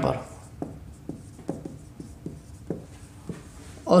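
Marker pen writing on a whiteboard: a run of short, irregular strokes as letters are drawn.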